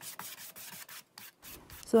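Wide flat paintbrush stroking acrylic paint back and forth across a bare wooden tray, a quick rhythm of brushing strokes, about four or five a second.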